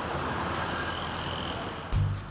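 Road traffic: a steady noise of cars passing on a city street.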